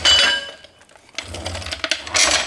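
A metal hand tool clanks down with a short metallic ring, followed about a second later by rustling and shuffling as someone moves about.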